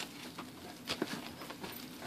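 Plastic wrapping being handled inside a cardboard box: soft rustling with a few light, scattered taps.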